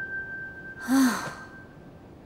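A woman's short, breathy sigh with a brief voiced note, about a second in, over a sustained background musical note that fades away.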